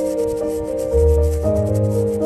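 Background music of slow held notes over a bass line, mixed with quick, repeated scrubbing strokes of a brush on a gravestone.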